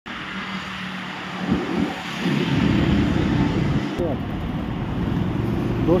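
Road traffic noise on a city street, with indistinct voices mixed in; the sound changes abruptly about four seconds in.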